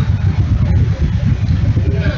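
Loud, uneven low rumble of air buffeting the microphone, with faint murmuring voices behind it.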